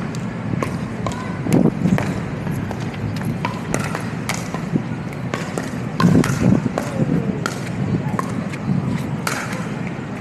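Pickleball rally: paddles popping against the hollow plastic ball, with bounces on the asphalt, heard as a string of irregular sharp clicks over steady city background noise.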